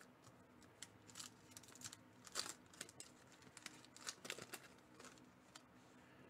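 Faint handling of baseball trading cards: irregular soft clicks and short rustles as cards are slid against a plastic sleeve and shuffled in the hand, with one louder swish partway through.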